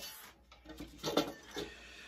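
Quiet room tone with one faint, short knock about a second in, from a wooden stick fitted with a guitar tuner being handled.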